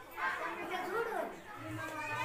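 People's voices talking over one another, indistinct chatter in a room.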